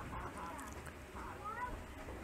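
Faint animal calls in the background: two short cries whose pitch rises and falls, one near the start and one past the middle, over a low steady hum.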